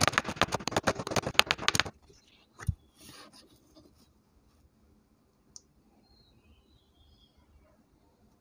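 A sheet of painting paper being flexed and handled, crackling in a quick run of clicks for about two seconds, then a soft thump as it is laid down on the cutting mat.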